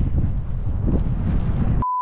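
Wind buffeting the camera microphone, a dense low rumble. Near the end a short, steady high beep replaces all other sound: a censor bleep.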